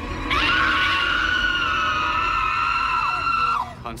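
A woman's single long, high-pitched scream, held for about three seconds with a slight waver before it breaks off near the end.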